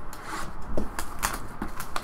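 Plastic shrink-wrap crinkling and tearing as hands pull it off a cardboard trading-card hobby box, a run of sharp crackles and clicks from about a second in.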